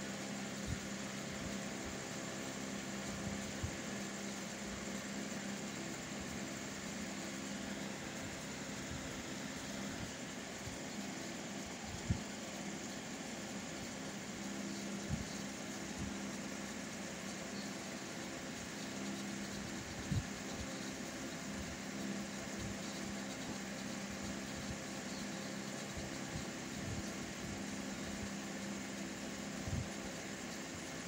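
Steady low mechanical hum in the room, with a few brief soft knocks, the loudest about twelve seconds in.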